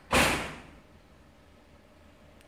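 A single sudden whoosh of noise just after the start, loud and fading away within half a second, then quiet room tone.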